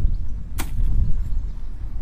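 A short, sharp noise about half a second in, over a steady low rumble.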